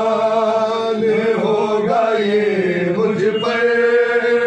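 Men chanting a Shia Muharram mourning lament (soz/nauha) in Urdu, without instruments. The melody moves in long, held notes that waver slowly up and down, with no beat or chest-beating.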